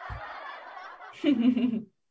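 Soft, fading laughter from people on a video call, with a brief low thud at the start; about a second in comes a short, louder voiced chuckle that cuts off suddenly just before the end.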